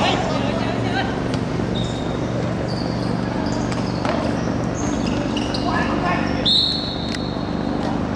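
Outdoor hard-court football play: rubber soles squeaking sharply several times, the ball being kicked with a few dull thuds, and players calling out, over a steady low hum. A longer, louder high squeak comes about six and a half seconds in.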